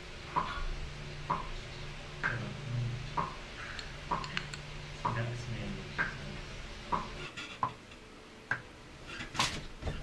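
Light clicks, about one a second, over a faint low hum, with a sharper click near the end.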